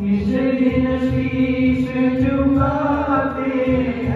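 A man singing a slow Hindi devotional song, a bhajan, with long held notes, accompanied by an electronic arranger keyboard that plays a sustained backing and a steady beat.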